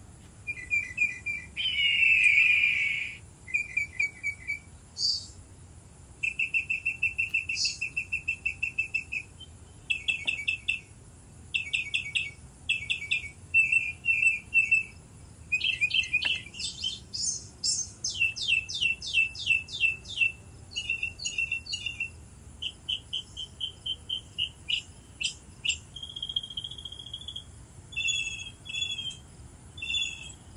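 Birds singing: a long series of varied chirps and rapid trills, one short phrase after another with brief gaps.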